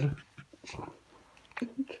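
A young baby making soft little grunts and whimpers as he opens his mouth into a yawn.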